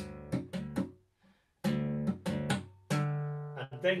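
Nylon-string classical guitar notes sounded by tapping and hammering on the fingerboard, a quick series of sharp-edged notes that each ring briefly. There is a short break about a second in, then the tapping resumes.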